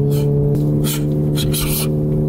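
Audi A3's turbocharged four-cylinder engine droning steadily at high revs, heard from inside the cabin while driving; it is being held at high RPM, off boost, so it warms up faster. The pitch steps slightly about half a second in, and two short hisses come near the middle.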